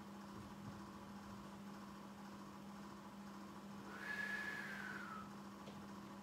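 Quiet room with a steady low hum; about four seconds in, a single faint whistle-like tone sounds for about a second, sliding slightly down in pitch.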